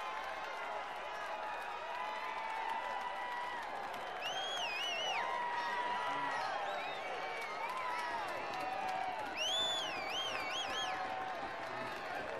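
Young footballers and bystanders shouting across a pitch, many distant voices overlapping, with two runs of high-pitched shouts about four seconds in and again near ten seconds.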